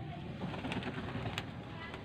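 Domestic pigeons cooing at the loft, with a couple of sharp clicks a little under a second apart.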